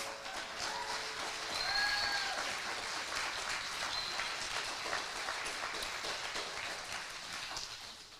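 Audience applauding at the end of a song, the clapping gradually thinning out toward the end, with one short rising-and-falling call from a listener about two seconds in.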